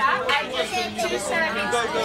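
Chatter of many voices, mostly children's, talking over one another.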